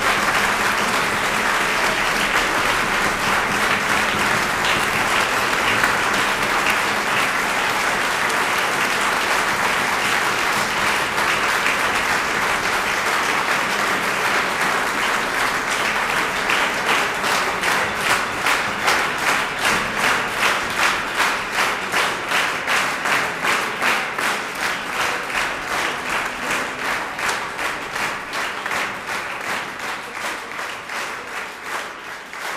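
Large audience applauding: a dense, even wash of clapping that about halfway through falls into rhythmic clapping in unison, roughly two claps a second.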